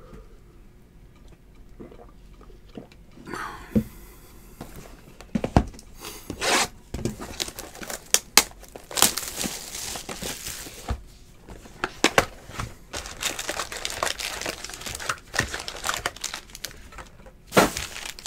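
Trading-card packaging being torn into and handled: crinkling and tearing of the box and its wrapped packs. After a fairly quiet first few seconds it becomes a dense run of sharp crackles.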